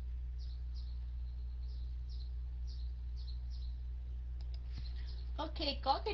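Faint, short high-pitched chirps in pairs, roughly one pair a second, over a steady low hum. A voice starts speaking near the end.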